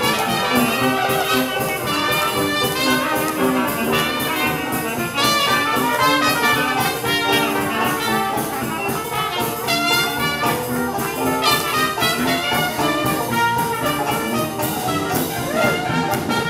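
Live jazz band playing: several trumpets lead together over sousaphone bass and drums, with a steady beat.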